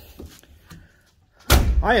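Driver's door of a 1990 Ford Mustang LX slammed shut: one heavy thud about one and a half seconds in.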